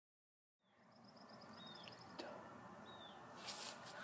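Faint outdoor ambience with birds calling after a moment of silence: a fast high trill of chirps, then two short high calls that slide downward. Brief rustling comes near the end.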